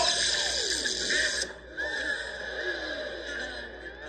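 Sci-fi ray zapping sound of a molecular separator ray being fired: warbling tones with a pitch that slides down through the first second. The brighter upper part cuts off about a second and a half in, and the rest fades away.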